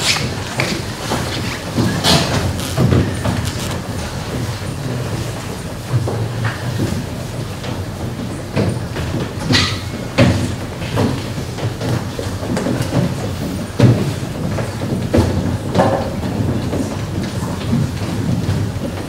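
Footsteps thumping on a raised wooden stage as a group of children walk on and line up, over the murmur and shuffling of a seated audience, with irregular knocks and bumps.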